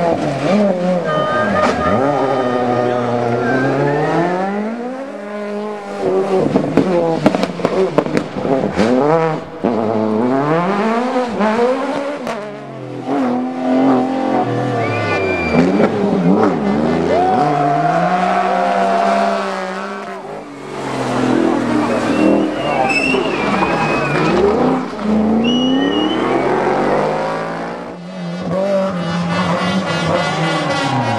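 Rally car engines revving hard through a hairpin, pitch falling on braking and downshifts, then climbing through the gears as each car accelerates away, with several cars passing in turn. A run of sharp exhaust pops and crackles comes about a third of the way in, and short tyre squeals are heard now and then.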